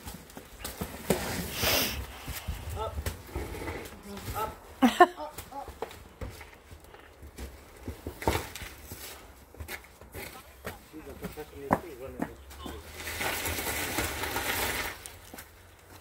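A large boxed couch in cardboard and plastic wrap being handled and tipped upright: scattered knocks and rustles, with faint voices.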